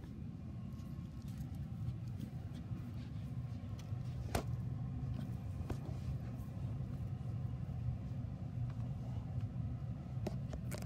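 A steady low rumble with a few faint clicks, the sharpest about four and a half seconds in.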